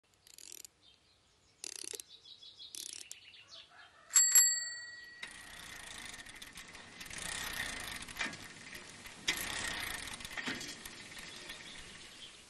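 A few short swishing noises, then a small bell struck twice in quick succession about four seconds in, ringing briefly before dying away. A steady noisy background with scattered clicks follows.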